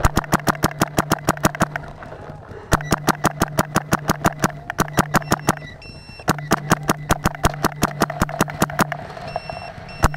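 Paintball marker firing rapidly, about ten shots a second, in three strings of two to three seconds with short pauses between, a low hum running during each string.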